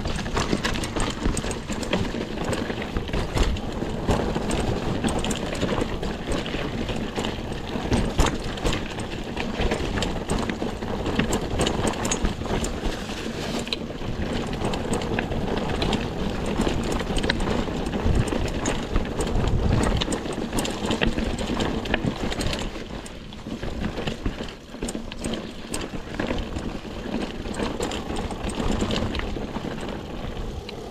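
Full-suspension mountain bike (Mongoose Ledge X1) riding down a rough dirt trail: tyres on dirt and the bike rattling over bumps, with many small knocks throughout. It eases off briefly a little past the middle.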